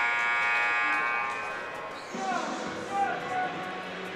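Ice-hockey arena end-of-period horn sounding one steady, many-toned blast that fades out about a second and a half in, marking the end of the period.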